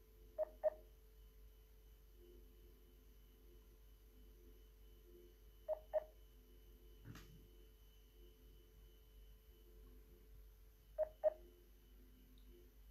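Telephone call on hold: a short double beep repeats about every five seconds over a faint steady line hum, with a single click about seven seconds in.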